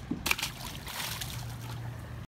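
A released grouper splashing at the water's surface: a few sharp splashes about a quarter second in, then a brief fizz of disturbed water. A steady low hum runs underneath.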